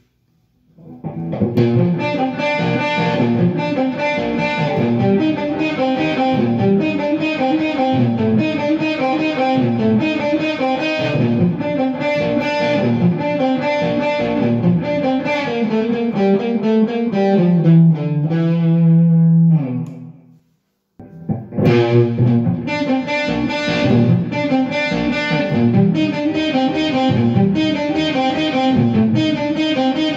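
Electric guitar played through an overdrive pedal, with a Boss DD-3 delay and the amp's reverb, into a Marshall DSL20H amp. The playing is continuous, with a held low note near the two-thirds mark, then a brief break before it picks up again.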